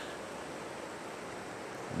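Steady, even rush of a rain-swollen river flowing.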